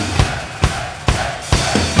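Heavy metal drum kit playing the song's opening beat in a live recording: sharp kick, snare and cymbal hits at a steady pace of about two a second.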